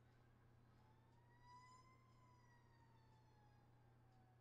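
Near silence, with a faint wailing tone like a distant siren. It rises slowly in pitch for about a second and then falls away over the next two.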